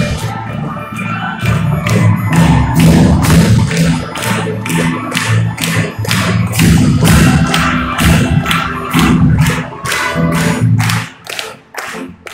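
Symphony orchestra playing a loud passage of film music: sustained low chords over a steady beat of sharp strikes, about three a second. The chords drop away near the end, leaving only the beat.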